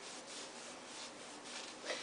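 Faint rub and swish of a cotton knee sock being pulled up over leggings, fabric sliding on fabric.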